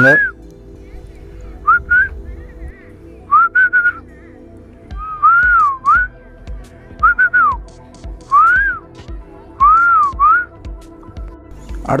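A whistled tune of short notes that rise and fall, played over soft background music with sustained chords. A gentle low beat joins about five seconds in.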